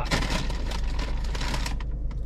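Paper food wrapping crinkling and rustling as it is pulled open by hand, a dense run of rapid crackles, with a steady low hum underneath.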